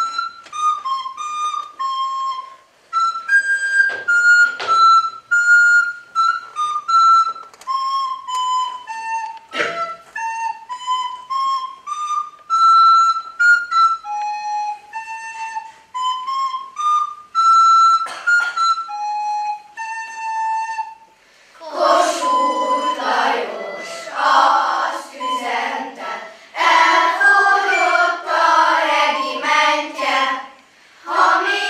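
A recorder playing a solo melody in short phrases with brief pauses between them. About two-thirds of the way in, a children's choir starts singing and is louder than the recorder had been.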